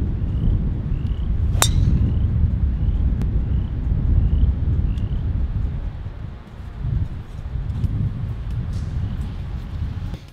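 A golf driver striking a teed ball once, a single sharp crack about a second and a half in, over a steady low wind rumble on the microphone. A bird chirps repeatedly in the first half, a short call about every two-thirds of a second.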